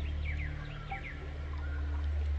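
Soft ambient music with a steady low drone, and a small bird chirping in quick pairs of short calls that thin out after about a second.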